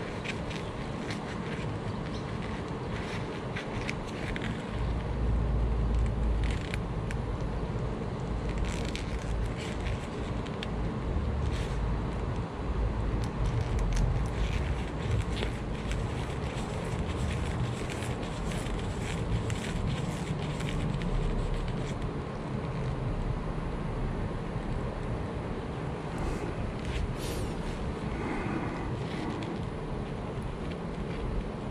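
Wind buffeting the microphone in uneven low gusts, strongest through the middle, over scattered light crackles and scrapes of gloved hands twisting a plastic wire nut onto copper wires. The nut spins without catching because it has no metal spring insert inside.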